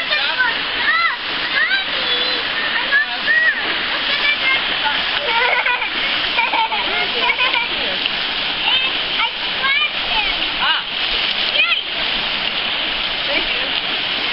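A small rocky mountain stream rushing steadily, with splashing from people wading in its shallow pool.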